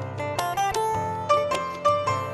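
Instrumental music played live on a grand piano, a melody of distinct ringing notes, accompanied by acoustic guitar and tabla. Two high piano notes, about halfway and near the end, stand out as the loudest.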